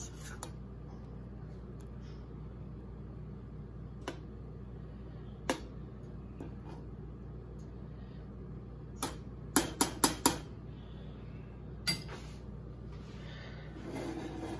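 A metal spoon stirring butter sauce in a stainless steel saucepan, clinking against the pan in scattered sharp taps, with a quick run of four clinks about ten seconds in. A steady low hum runs underneath.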